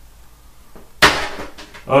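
A single sudden sharp knock about a second in, fading quickly.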